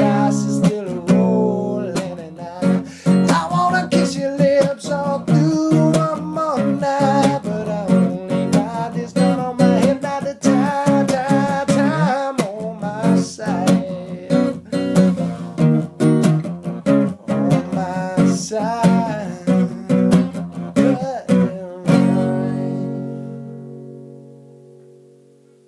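Acoustic guitar strummed in a steady rhythm, with a man's voice singing along over the chords. Near the end a final chord is struck and rings out, fading away.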